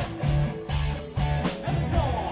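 Live punk rock band playing: electric guitars and bass over drums, with sharp snare and cymbal hits in a steady beat.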